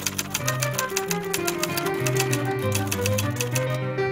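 Typewriter keys clacking in a rapid, even run of keystrokes that stops briefly near the end, over background music.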